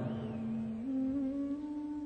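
Soft background music: sustained instrumental notes held steady, stepping up in pitch twice.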